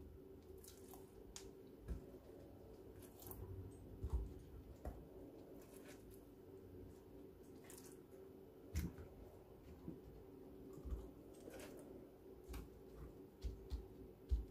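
Faint wet squishes and soft taps of marinated tilapia pieces being lifted from a bowl of marinade and laid on a tray of raw vegetables, a few scattered sounds every second or two over a low steady hum.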